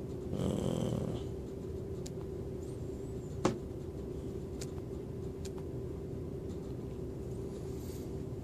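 Steady low room hum with a few faint, sparse taps of a stylus on a phone's glass touchscreen, the sharpest click about three and a half seconds in, and a short soft rustle near the start.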